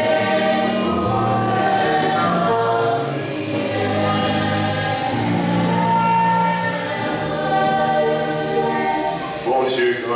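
Choir singing a slow hymn, the voices holding long notes.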